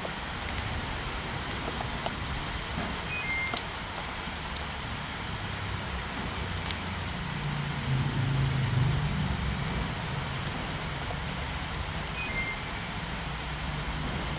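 Steady background noise with a low engine hum that swells for a couple of seconds around the middle. A few light, sharp clicks sound as electrolytic capacitors are set down on a concrete floor.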